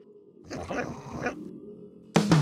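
Animated dog's sound effect: one short vocal sound starting about half a second in and lasting under a second.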